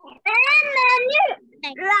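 A high-pitched, drawn-out call lasting about a second, its pitch rising at the end, followed by a shorter call near the end.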